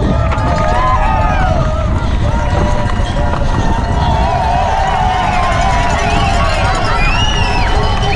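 Wind rush on a bike-mounted action camera and the rumble of a downhill mountain bike running fast over a rough dirt track, with trackside spectators shouting and cheering.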